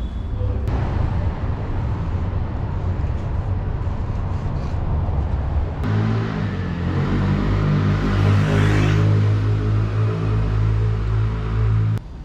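A car passing along the street. Its engine hum and tyre hiss swell from about six seconds in and are loudest around eight to nine seconds, over steady low street rumble.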